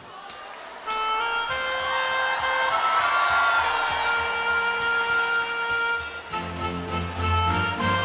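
Live band beginning a slow song's instrumental introduction: sustained chords come in about a second in over audience applause, and a bass line joins near the end.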